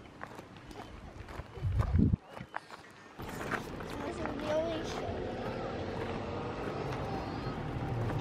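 Footsteps crunching on gravel, with a loud low thump on the microphone about two seconds in. From about three seconds on, distant, indistinct voices over a steadier outdoor background.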